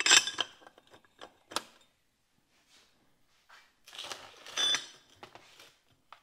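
Steel bolts, washers and plates clinking against each other and a steel table as they are fitted together by hand: a cluster of clinks at the start, a few single ticks, then a denser clatter with a brief metallic ring about four and a half seconds in.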